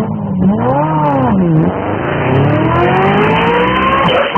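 Car engine revving sound effect laid over the picture. The pitch rises and falls once in the first second and a half, then climbs in one long, steady rise like a car accelerating hard.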